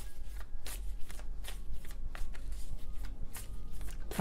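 A tarot deck being shuffled by hand to draw another card: a quick, irregular run of card clicks and riffles, about four a second.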